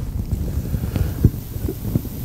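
Uneven low rumble of microphone noise, like wind or handling on the mic, with scattered soft low bumps.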